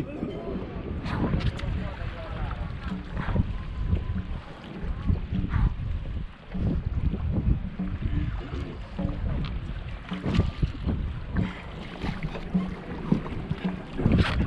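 Wind rumbling on the microphone over small water sounds around a dragon boat sitting at rest, with a few light knocks of paddles or hull and faint voices in the background.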